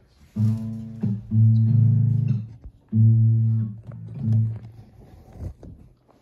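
Acoustic guitar plucked, a handful of low notes ringing out one after another with short gaps between them.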